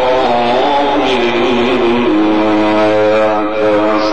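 A male Quran reciter sustains one long melismatic note in mujawwad style. The pitch winds down in small ornamental steps over the first two seconds and is then held steady.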